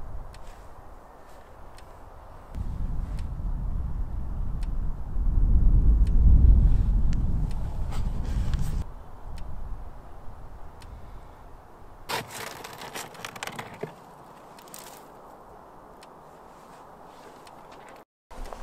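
Knocks and scrapes of wooden beehive boxes and covers being lifted off and set down, over a low rumble of wind on the microphone that swells for several seconds in the first half.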